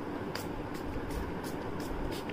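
Fine-mist pump spray bottle of facial toner being sprayed in a quick series of short hisses, about two to three a second, over a steady low hum.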